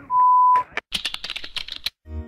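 A steady one-kilohertz censor bleep lasting about half a second, covering a spoken word. It is followed by about a second of rapid, dense clicking, like fast typing.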